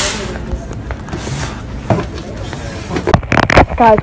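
Rustle and bumps from a handheld phone being carried at a fast walk: a loud rustling burst at the start and a few knocks near the end, with faint voices in between.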